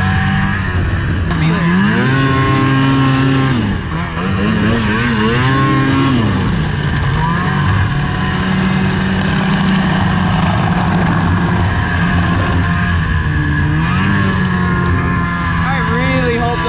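A 2005 snowmobile's two-stroke engine running under way. It revs up and eases off twice in the first six seconds, holds a steady pitch, then climbs again near the end.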